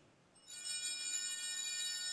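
Altar bells (a cluster of small brass Sanctus bells) shaken by a kneeling server, starting suddenly about half a second in and ringing on as a bright cluster of high tones with repeated re-strikes. The ringing marks the elevation of the chalice at the consecration.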